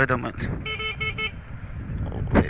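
Motorcycle horn sounded in a quick string of about four short beeps, over the low steady running of a motorcycle engine on the move.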